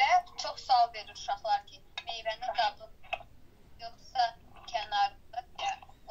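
Speech throughout, heard through a small device speaker, with a thin sound that lacks the lower tones of the voice.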